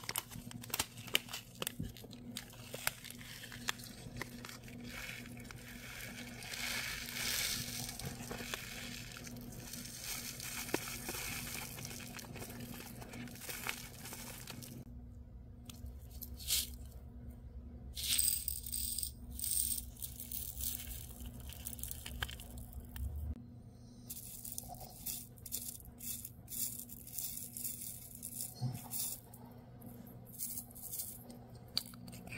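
Thin plastic packaging crinkling as it is opened, then small resin flower charms and tiny pearls rattling and clicking as they are tipped from a plastic tray into a clear plastic jar, over a steady low hum.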